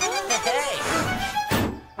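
Cartoon soundtrack: bouncy music and wordless character vocal sounds, then a single thunk sound effect about one and a half seconds in that dies away quickly.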